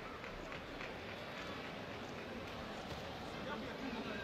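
Boxing arena ambience: a steady crowd murmur with faint, irregular light taps of the boxers' feet on the ring canvas.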